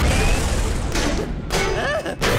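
Cartoon sound effect of a household invention's cannon blasting something out: a loud, noisy blast with a deep rumble that eases after about a second.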